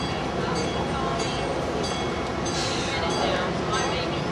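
Steady rumble of a nearby vehicle engine running at idle, with people's voices in the background.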